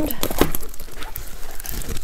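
A large diamond-painting canvas and its protective sheet being flipped over and handled: rustling with a string of sharp crackles.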